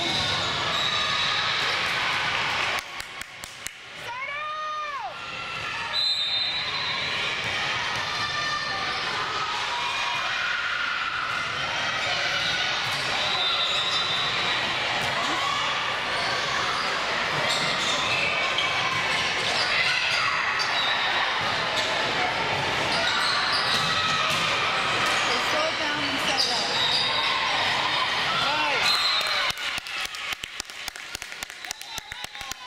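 Indoor volleyball rally in an echoing gym: many voices calling and chattering, with ball hits and short high squeaks, and a quieter lull a few seconds in.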